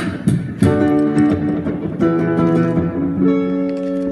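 Electric guitar playing chords: a few quick strummed strokes in the first second, then chords left ringing, with a new stroke about two seconds in and a change of chord a little after three seconds.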